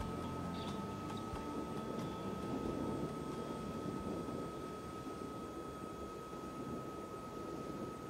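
Steady background noise with a constant thin high-pitched whine, no music. The last of the music trails off right at the start.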